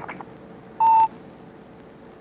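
A few computer keyboard keystrokes, then a single short electronic beep from the computer, a steady mid-pitched tone about a quarter of a second long, about a second in, as the terminal asks for a password.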